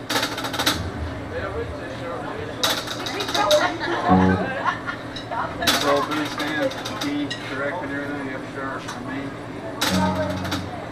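Restaurant crowd chatter with three short bursts of sharp clinking and clattering, over a steady low amplifier hum; a single word is spoken into a microphone about four seconds in.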